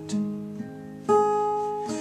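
Acoustic guitar strummed twice, a soft stroke at the start and a louder one about a second later, each chord left ringing and fading.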